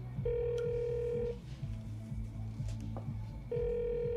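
Telephone ringback tone heard through a handset: two rings of about a second each, roughly three seconds apart, while an outgoing call waits to be answered, over soft background music.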